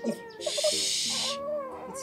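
A woman making playful hooting vocal sounds, with a loud breathy hiss about half a second in that lasts about a second, over soft background music.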